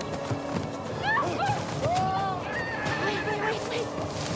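Several men yelling high, wavering war cries that rise and fall in pitch, overlapping one another, over a film music score.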